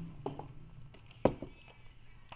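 Soft sipping from a plastic cup, then one sharp knock a little over a second in as the cup is put down on a hard surface.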